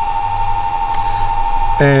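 Steady electrical hum with a constant high-pitched whine from power electronics running on the solar and battery system.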